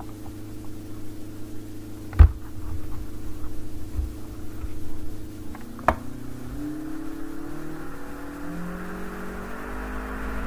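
A steady machine hum made of several tones, which shift about halfway through and then slowly rise in pitch. There is a sharp click about two seconds in and a fainter one near six seconds.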